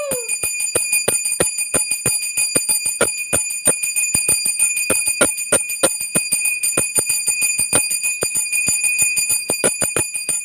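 Brass puja bell rung fast and without pause, about four or five strikes a second, its ring carrying on between strikes. A held note fades out with a falling pitch right at the start.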